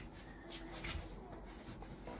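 Faint rustling and shuffling of clothes and cushions being rummaged through by hand.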